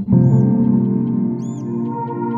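Background music of sustained, layered instrumental tones, which cut out for a moment at the start and come back in. Short high chirps sound over it about half a second and again about a second and a half in.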